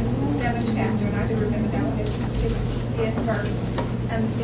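A woman's voice speaking, over a steady low electrical hum.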